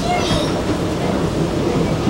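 Interior running noise of an SMRT R151 (Changchun Alstom Movia) metro train in motion: a steady rumble of the wheels on the track with propulsion hum.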